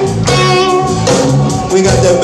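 Live band music led by an electric bass guitar solo: a run of plucked bass notes, one after another.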